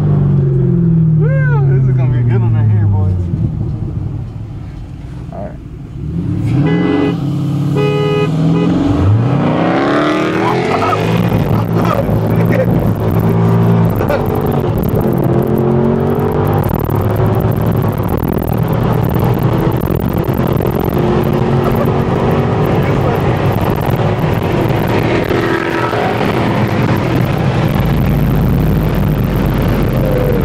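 Corvette's LS3 6.2-litre V8 with aftermarket intake and exhaust, heard from inside the cabin: revs fall off in the first few seconds, go quieter briefly, then climb again and the engine pulls steadily under load for the rest.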